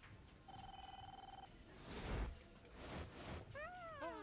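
Animation sound effects: a steady electronic beep lasting about a second, then a couple of swelling swishes, and near the end a pitched sweep that rises and then drops away.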